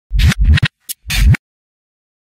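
Record-scratch sound effect: four quick sweeping vinyl scratches within the first second and a half, stopping abruptly.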